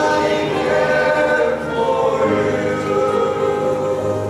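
Small men's gospel choir singing in close harmony, holding sustained chords, with a deeper low part coming in about halfway through.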